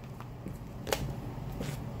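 Oracle cards being shuffled by hand: soft card rustling with a sharp snap about a second in and a fainter one near the end.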